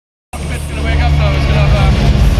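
Live metal concert sound from inside the arena crowd: a loud, steady low bass drone from the PA with voices over it, cutting in about a third of a second in.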